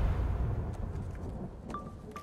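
Movie-trailer sound design: a deep rumbling hit fading away, with a few faint clicks and a short high beep near the end.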